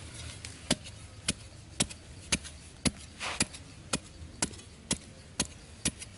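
A pointed metal digging bar jabbed repeatedly into hard, dry sandy soil, loosening clods of earth. The strikes are sharp and even, about two a second.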